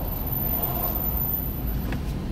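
Steady low rumble inside a car's cabin from the engine idling, with no sudden events.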